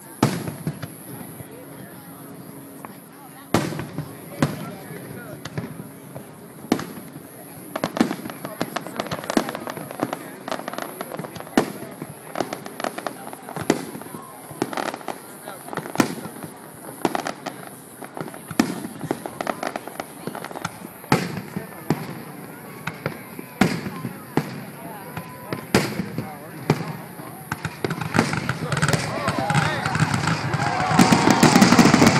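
Aerial fireworks shells bursting one after another, sharp irregular bangs a second or so apart, coming thicker and louder near the end.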